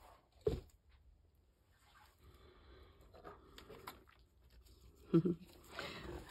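A brief laugh about half a second in, then a quiet stretch of faint handling noise, and a short voice sound about five seconds in.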